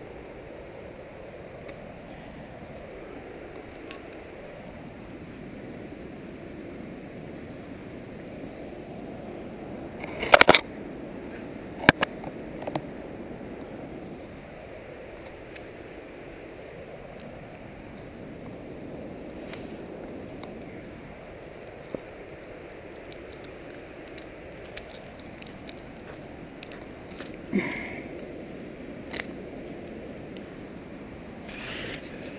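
A climber's hands and shoes scuffing on a gritstone boulder over a steady hiss. A few sharp knocks come through, the loudest about ten and twelve seconds in and two smaller ones near the end.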